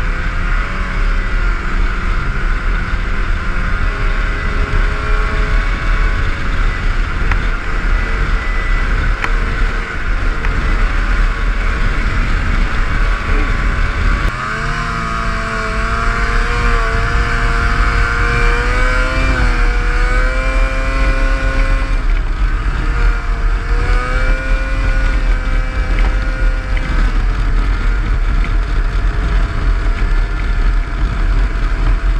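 Snowmobile engine running as the sled travels along a trail, with a strong low rumble throughout. About halfway through the sound dips briefly, then the engine pitch rises and wavers as the throttle is worked.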